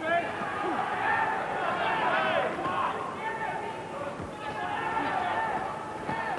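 Boxing crowd shouting and calling out to the fighters, many voices overlapping, with occasional dull thuds from the ring.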